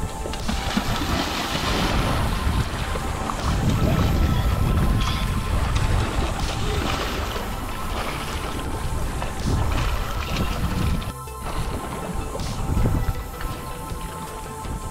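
Background music with sustained steady tones over a low, uneven noise, and a brief dropout about eleven seconds in.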